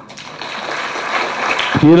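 Audience applauding in a hall, a dense clapping that swells over nearly two seconds before the speaker's voice returns.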